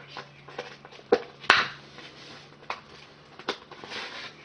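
Plastic blister packaging being handled and opened, giving a few sharp clicks and crackles, the loudest about a second and a half in, over a faint steady low hum.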